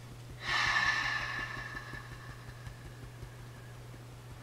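A woman's long, deep exhale, starting about half a second in and fading away over about two seconds.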